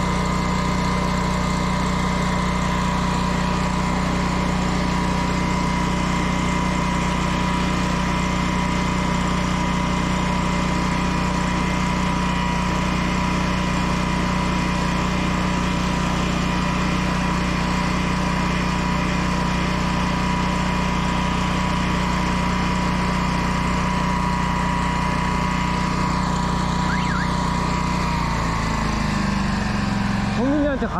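An engine running steadily at a constant speed, with a low hum and a high whine over it; near the end its pitch slides down as it slows.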